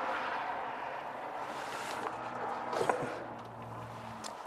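Steady rushing background noise with a faint low hum, and a single soft click about three seconds in as a wooden cabinet drawer is handled.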